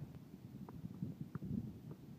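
Low, uneven rumble of wind buffeting a phone microphone on an open beach, with a few faint short blips in it.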